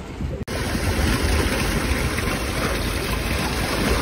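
Sea surf washing over a rocky shore: a steady rush of water noise with a deep rumble underneath, starting abruptly about half a second in.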